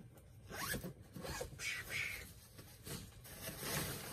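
A zipper pulled in several short rasping strokes as clothes are taken out of a bag.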